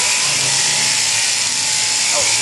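Electric sheep-shearing handpiece running steadily, a high buzzing hiss over a low motor hum.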